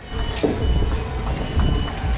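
Outdoor race-course ambience: a heavy, uneven low rumble with a thin, steady high-pitched electronic beep tone that drops out briefly a few times, and a few faint knocks.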